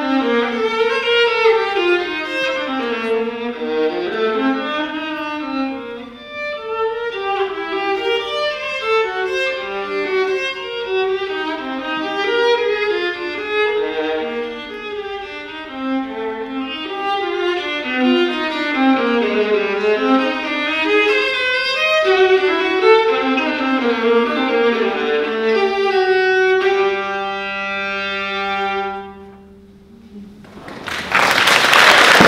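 Solo violin, bowed, playing a fast unaccompanied passage of quickly moving notes, then settling on a long held low chord that fades away near the end.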